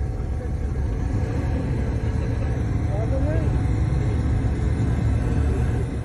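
Low, steady rumble of army pickup trucks driving in a convoy, heard from close by, with a few voices calling out about halfway through.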